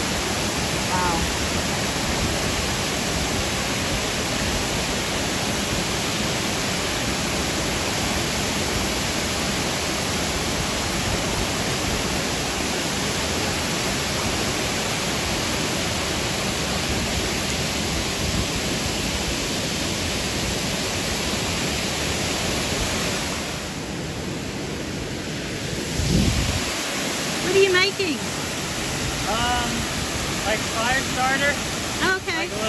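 A large waterfall rushing over broad rock ledges, heard close up as a loud, steady wash of water noise. A little over two-thirds through it dips for a couple of seconds, and near the end brief voices of people nearby come through over it.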